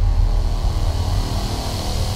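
Logo intro sting: a dense, bass-heavy sound effect that slowly fades out.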